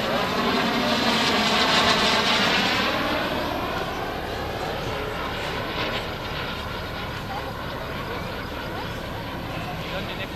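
Kerosene turbine of an RC Viper model jet flying past, a rushing jet noise that is loudest about two seconds in and then fades steadily as the jet moves away.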